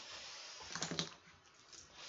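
Felt-tip or ballpoint pen scratching on paper as a wavy underline is drawn, followed by a few light clicks and scrapes of the pen and hand on the sheet.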